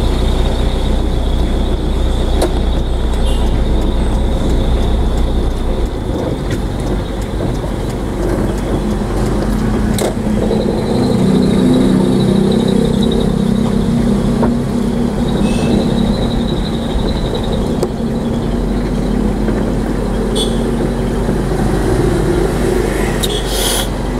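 Engine and road noise heard from inside the cab of a moving vehicle: a steady low rumble. The engine note grows louder for several seconds in the middle, and there are a few sharp knocks.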